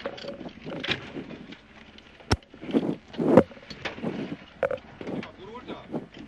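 Indistinct low voices inside the stopped rally car's cabin, with a single sharp click a little over two seconds in.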